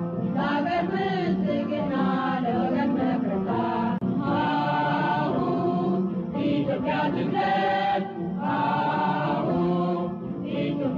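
Chanted vocal music sung by a group of voices, with short breaks between phrases about four and eight seconds in.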